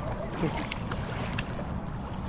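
Wind rumbling on the microphone, with small sharp water splashes and drips from a paddle being worked in the shallow water beside a stand-up paddleboard. A short voice sound comes about half a second in.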